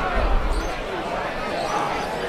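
Open-air football ground sound: faint distant voices of players and spectators over low thuds.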